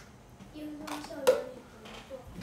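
A brief wordless voice sound, then a single sharp tap a little past halfway, the loudest moment.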